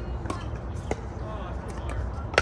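Pickleball paddles striking a hard plastic ball: a few sharp pops, the clearest about a second in and two quick ones near the end, with voices in the background.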